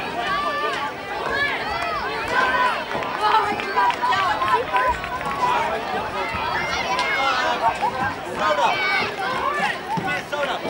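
Many spectators' voices overlapping outdoors, talking and calling out at once, with no single voice standing out.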